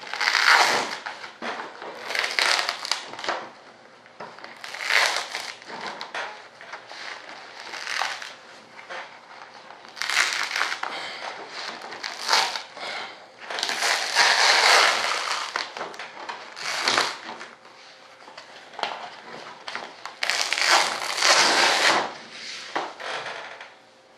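Aluminium foil crinkling in irregular bursts as it is handled and pulled back from a fresh carbon-fibre layup.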